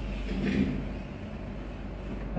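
A pause between spoken phrases: a steady low hum and room noise, with a faint, brief voice sound about half a second in.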